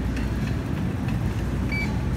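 A Mettler Toledo touchscreen scale gives a single short, high beep near the end as a key is pressed on its screen. Under it runs a steady low hum.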